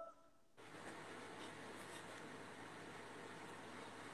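Faint steady hiss of room tone and microphone noise, starting about half a second in, with a few faint rustles.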